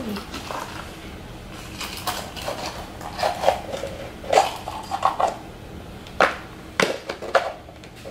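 Plastic Easter egg being handled and opened: a series of sharp plastic clicks and knocks, the loudest in the second half.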